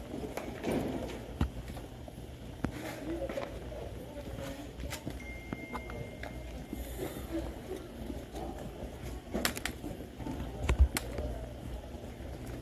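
Indistinct voices of a group of people and their footsteps as they walk, with scattered sharp clicks and knocks, the loudest knock near the end.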